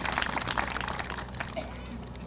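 Audience applauding, a patter of many hand claps that dies away over the second half.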